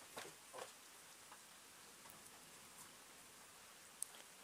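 Near silence: a faint steady hiss of night air, with two soft ticks in the first second.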